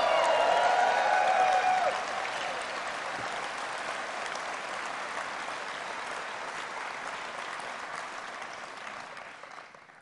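A large hall audience applauding. The clapping is loudest for the first couple of seconds, then settles and dies away near the end.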